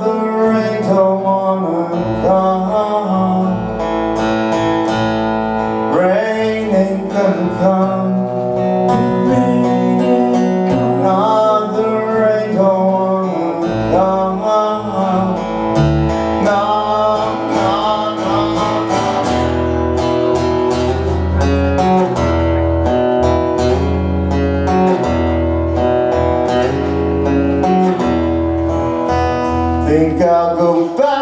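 Live acoustic duo: strummed acoustic guitar and plucked upright double bass, with a man's voice singing. The bass notes come through much stronger from about two-thirds of the way through.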